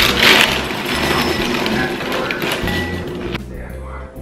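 Dry Life Cinnamon cereal squares pouring from the box's crinkly liner bag into a glass bowl, rustling and rattling, then cutting off suddenly a little after three seconds in. Background music with a steady bass line plays under it.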